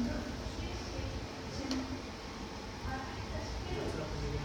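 Indistinct speech in a room, in short scattered phrases over a steady low rumble of room noise.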